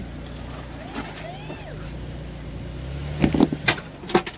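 Jeep Wrangler Rubicon engine running at low revs as the Jeep crawls over a rock step, the engine note rising a little near the end. A few sharp knocks and crunches near the end are the loudest sounds.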